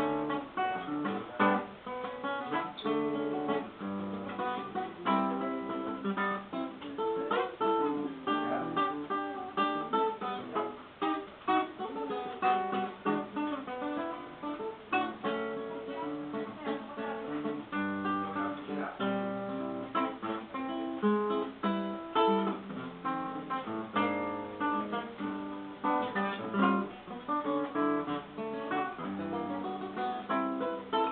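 Solo classical guitar played with the fingers, a continuous run of plucked notes and chords.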